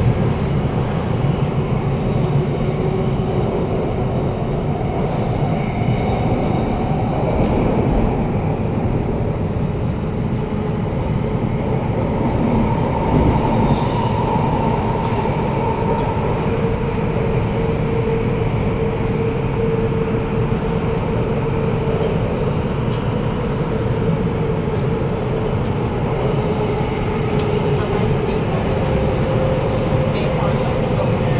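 Cabin sound of a Bombardier Movia C951 metro train running between stations: a steady rumble of wheels and running gear, with a thin whine that slowly shifts in pitch.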